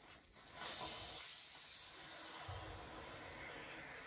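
Water hissing steadily through a water heater's drain valve into an attached garden hose, starting about half a second in. A brief low rumble comes about halfway through.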